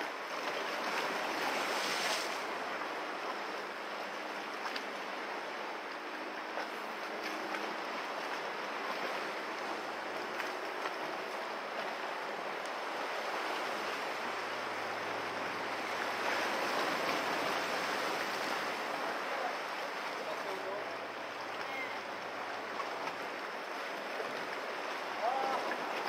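Steady wash of sea surf against the shore rocks, an even rushing that swells a little now and then.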